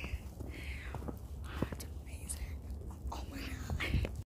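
Wind buffeting the microphone in a steady low rumble, with soft breathy whispering or sighing voice sounds a few times and a couple of faint clicks.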